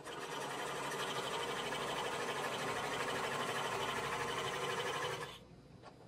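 Overlock machine (serger) running steadily at speed, stitching cotton elastic onto swimsuit fabric through an elastic applicator foot, then stopping about five seconds in.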